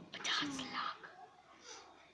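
A person whispering softly under their breath for about a second near the start, then a faint breath.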